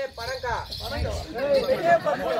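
Several voices talking over one another, with a faint steady high chirring of crickets underneath.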